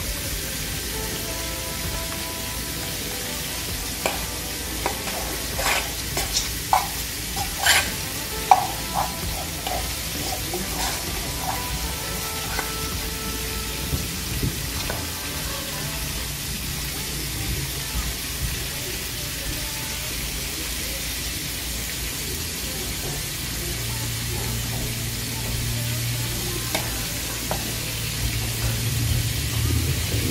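Barracuda pieces shallow-frying in hot oil in a pan, a steady sizzle with a run of sharp pops and crackles between about 4 and 11 seconds in.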